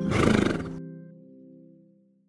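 A horse's whinny sound effect, under a second long, over the closing chord of a plucked, harp-like music sting; the chord rings on and fades away.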